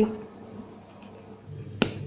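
A single sharp click near the end of the needle being pushed through embroidery fabric stretched taut on a frame, over a low steady hum.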